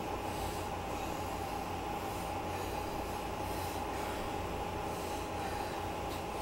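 Elliptical trainer running under steady pedalling: a constant whine over a low rumble, with a faint swish repeating about once a second with each stride.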